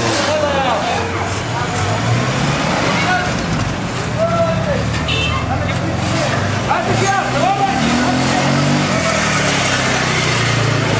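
Outdoor crowd of many people talking and calling out at once, indistinct overlapping voices, over the steady low hum of a car engine running close by.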